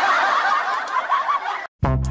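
Several people laughing and snickering at once, a dense mix of overlapping laughs that cuts off abruptly just before the end.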